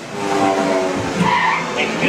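The ride's show soundtrack from its speakers: a held chord of several steady tones, with a brief higher sound a little past the middle.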